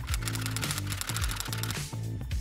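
A rapid run of typewriter key clicks over background music with a steady bass line.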